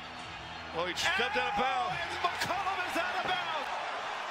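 Sound of a televised NBA game: commentator's voice over arena crowd noise, rising about a second in, with a few sharp knocks of the ball and feet on the hardwood court.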